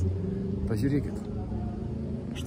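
Steady low rumble of motor traffic, with a short burst of a man's voice just under a second in.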